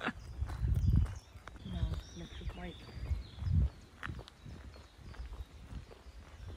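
Footsteps of a person walking along a paved path, with irregular low thuds, and brief voice sounds from the walker in the first half.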